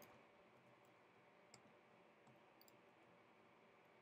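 Near silence, with a few faint, short clicks of computer keyboard keys.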